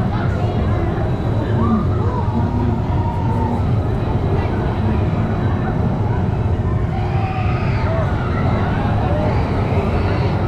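Fairground crowd voices over a steady low rumble from a running amusement ride, the 1001 Nachts swinging gondola, with higher-pitched voices rising from about seven seconds in.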